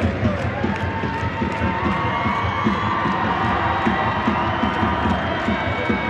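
Stadium crowd cheering and chanting, with a steady beat about twice a second, from clapping or a drum, running under the voices.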